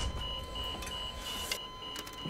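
Hospital alarm beeping in an even, rapid pulse of high tones, about three a second, signalling a code blue. A low rumble sits under the first half second.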